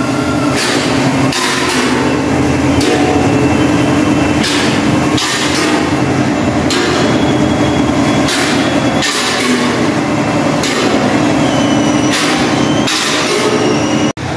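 Suspension being checked with the car on an alignment lift: a steady mechanical hum with about a dozen irregular metallic knocks.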